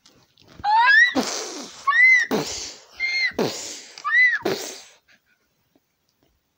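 A high voice making four silly squealing noises about a second apart, each sliding up in pitch and ending in a breathy rush, then stopping.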